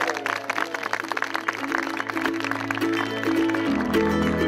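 Guests clapping over background music with held notes; the clapping thins out in the second half while the music carries on.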